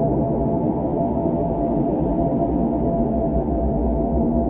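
Electronic techno (neorave) track: a steady, muffled synthesizer drone with held tones and deep bass, little treble and no distinct beat.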